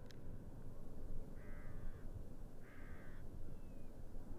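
A crow cawing twice, each call well under a second long, over a low steady background rumble.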